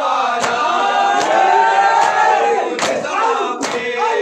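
A group of men chanting an Urdu nauha (lament) in unison, kept in time by sharp chest-beating slaps (matam), about one slap every three-quarters of a second. The slaps pause in the middle while a long sung line is held, then resume near the end.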